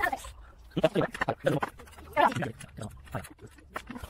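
Short bursts of a person's voice without clear words, with wavering pitch, about a second in and again about two seconds in.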